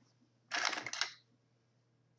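A short scratchy rustle, well under a second, of hair being wound and pressed onto a medium hot roller.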